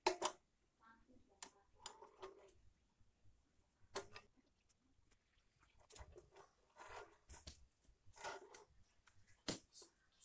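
Scattered plastic clicks, taps and knocks from a Philips clothes iron's housing and handle being handled and fitted back together, the loudest at the start, about four seconds in, and near the end.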